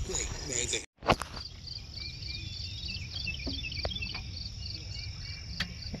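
Insects chirping in a steady, quick rhythm across a summer field, with a low rumble underneath; the sound drops out briefly about a second in.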